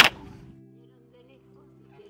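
A single sharp crack at the very start, as a boy swings something on a line, then a low, faint background music drone of held tones.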